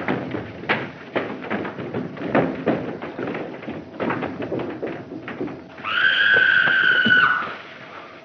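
Rapid, irregular footsteps thumping on wooden stairs as several men climb them in a hurry. Near the end comes one steady, high-pitched sustained sound lasting about a second and a half.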